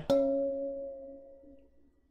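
A wine glass clinked once in a toast, a bright ring that fades away over about a second and a half.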